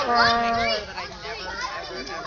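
Excited children shouting and chattering over one another, with one long held shout at the start.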